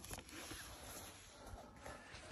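Very quiet: only faint, even background noise, with no distinct sound standing out.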